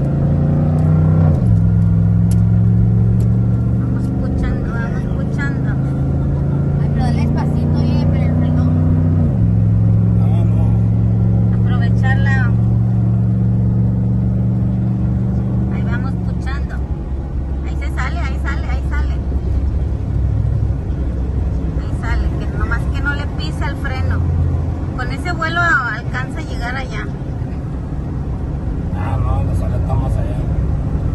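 Engine of a car pushing a stalled SUV by its bumper, heard from inside the cab. It works under load, its note climbing and dropping sharply twice as it shifts up, then falls away about 16 seconds in as it eases off.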